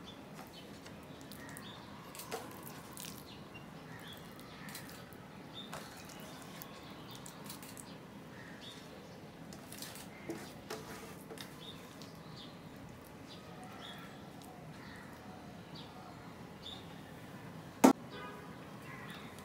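Faint scattered clicks and scrapes of mashed potato and bean vorta being scooped from a steel bowl onto a steel plate of rice. A single sharp clack, much louder than the rest, comes near the end.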